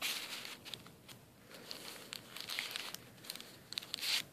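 Paper rustling and crinkling in irregular bursts with small scattered clicks, as a tag or card is drawn out of a paper pocket in a handmade coffee-dyed paper journal and the pages are handled.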